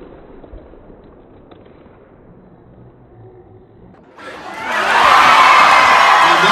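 Low background murmur of an arena crowd. About four seconds in, the crowd breaks into loud cheering and yelling.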